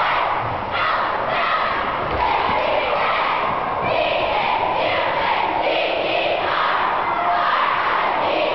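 A cheerleading squad shouting a cheer in unison, in phrases about a second long, over a large crowd's yelling and cheering.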